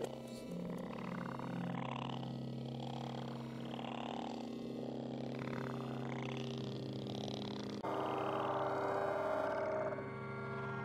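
A steady low drone with a distorted, growling, voice-like sound rising and falling over it. This is the eerie, grating soundtrack of a found-footage horror clip. About 8 seconds in it turns louder and noisier.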